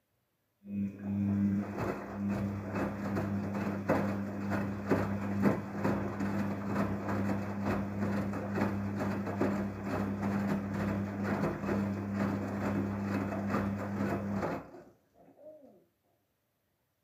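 Daewoo DWD-FT1013 front-loading washing machine turning its drum in the wash phase: a steady motor hum with wet laundry tumbling and many small knocks. It starts about half a second in and stops abruptly near the end as the drum comes to rest.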